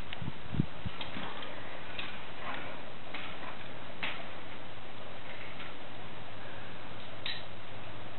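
Steady background hiss with faint, scattered clicks and a few soft knocks in the first second.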